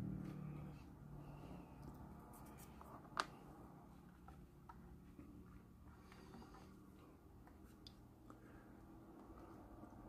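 Near silence: faint handling of a plastic model car body on a cutting mat, with one sharp click about three seconds in.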